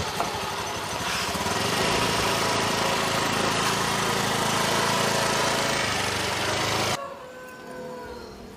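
Motorcycle engine running steadily from about a second in, then cut off suddenly near the end.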